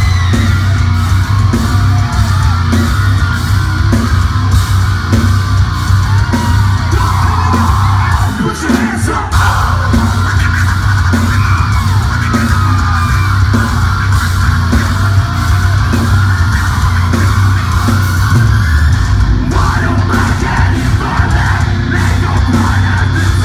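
A metalcore band playing live at full volume: drums, distorted guitars and heavy bass under shouted and sung vocals.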